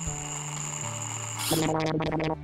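Soft cartoon background music with a thin, steady high electronic tone. Near the end a short buzzing, pitched sound effect comes in.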